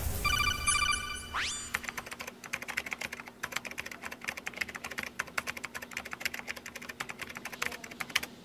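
A quick run of electronic beeps ending in a rising sweep, then rapid, fairly quiet keyboard typing clicks: a computer-typing sound effect for text being typed out on a screen.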